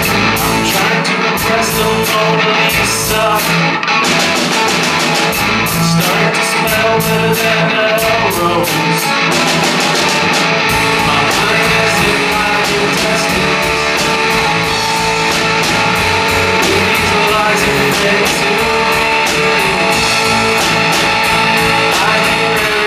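Live rock band playing: a male lead vocal over guitar, bass guitar and a drum kit keeping a steady beat. The sound gets fuller and heavier about ten seconds in.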